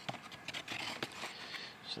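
Faint handling noises of metal engine parts on cardboard: light scrapes and a few small knocks as the crankcase cover is lifted and moved.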